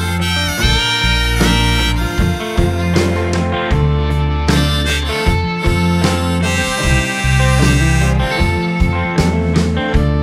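A live rock band playing an instrumental passage: harmonica, played from a neck rack, leads over strummed guitars, deep bass notes and a steady beat.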